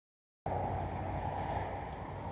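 Outdoor trail ambience that starts abruptly about half a second in: short high chirps, about three a second, over a steady low rumble.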